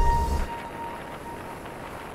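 Vehicle cabin noise while driving: engine and road rumble, dropping about half a second in to a quieter, even road hiss.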